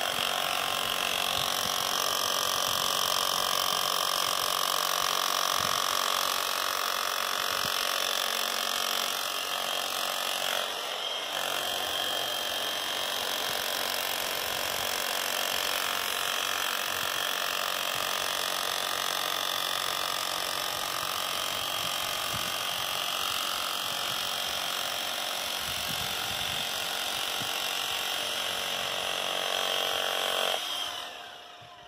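A machine motor running steadily with a held whine of several tones, which cuts off just after the end.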